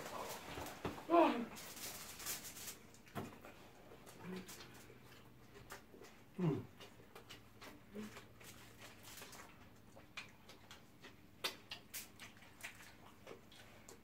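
Eating at the table: fingers picking grilled fish off a foil tray and people chewing make scattered small clicks and crinkles. Two short falling 'mm' hums come from an eater, one about a second in and one about halfway through.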